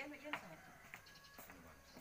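Faint, indistinct voices in the background, no clear words.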